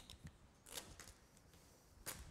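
Faint scraping and rustling of a plastic squeegee worked along vinyl wrap film at a car's door trim, in a few short strokes, after a click at the start.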